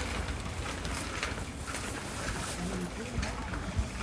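Outdoor street-market ambience: a steady wash of background noise with faint, indistinct voices of passers-by.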